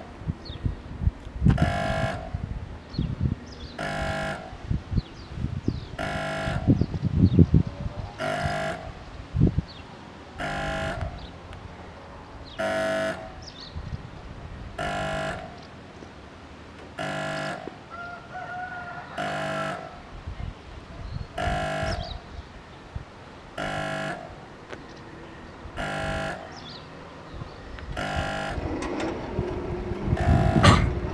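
Soviet-type level-crossing warning horn sounding short, evenly spaced blasts about every two seconds. This is the crossing's warning phase, signalling an approaching train before the barriers come down.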